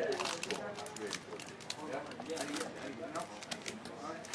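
Indistinct voices talking, with frequent short clicks and rustles from trading cards and booster packs being handled and flicked through.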